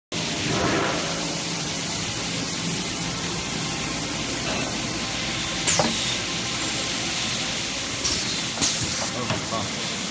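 Toilet paper packing machine running in a factory: a steady hiss-like mechanical noise, broken by a few sharp clacks about six seconds in and again near the end.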